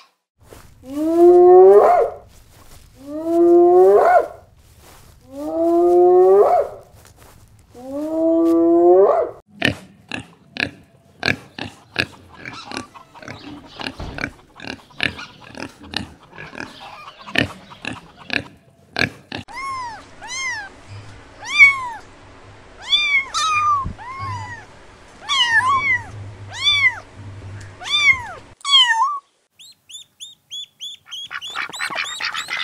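A sequence of farm animal calls: four long calls that rise in pitch, then a pig grunting in many short, quick grunts, then a run of short, high, arched calls.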